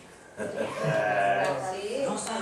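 A person's voice, drawn out and wavering in pitch, without clear words, starting about half a second in.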